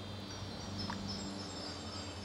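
A steady low drone, a pitched hum with evenly spaced overtones, with faint high tones held above it.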